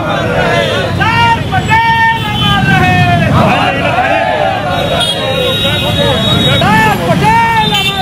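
A group of people shouting slogans together in loud, rhythmic chants, the raised voices rising and falling about once a second.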